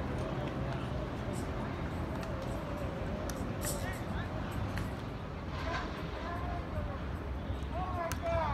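Distant voices of several people talking and calling out across an open field, over a steady low background rumble, with a few faint sharp clicks.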